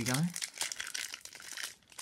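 Plastic trading-card pack wrapper crinkling as it is handled and opened, a crackly rustle that fades out about a second and a half in.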